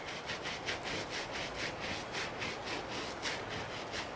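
Shoe-cleaning brush scrubbing a mark on a black sneaker in quick back-and-forth strokes, about five scratchy strokes a second.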